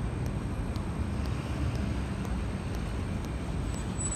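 Steady road traffic noise from a city street, a low rumble with no single event standing out.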